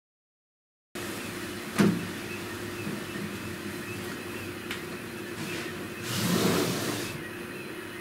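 Stepper motors of a CNC flat coil winder running as its tool head lays fine wire in a spiral, a steady mechanical hum that starts suddenly about a second in. There is a sharp click near two seconds in and a louder stretch of noise about six to seven seconds in.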